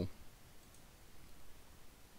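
A faint computer mouse click against quiet room tone.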